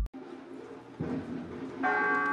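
A short noisy hiss, then a bell starts ringing near the end with sustained, overlapping tones: a church bell.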